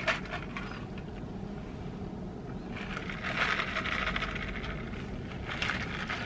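Ice cubes rattling and scraping in a plastic cup of iced coffee as a straw stirs them: a short clatter at the start, a longer scratchy rattle about three seconds in that lasts about two seconds, and a few clicks near the end.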